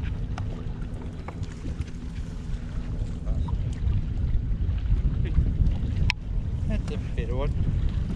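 Wind buffeting the camera microphone on an open boat, a steady low rumble, with a few sharp clicks and knocks and brief voice sounds near the end.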